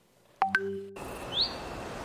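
Outdoor rural ambience: a steady hiss with a single short rising bird chirp about a second in. It is preceded by a couple of sharp clicks with a brief hum where the sound cuts in.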